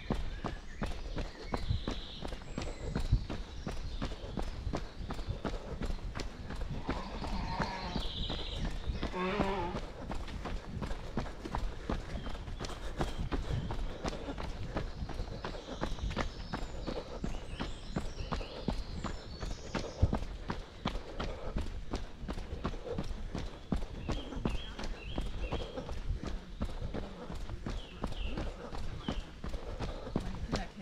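A runner's footsteps on a packed dirt forest path in a quick, steady rhythm, with his breathing, and birds chirping now and then.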